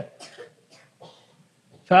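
A few faint, short coughs or throat-clearing sounds during a pause in a man's lecture, then his speech resumes near the end.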